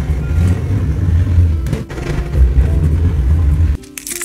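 A hand scraper pushed across a wooden board, scraping up a thin sheet of hardened candle wax: a steady, low, rough scraping that stops abruptly shortly before the end.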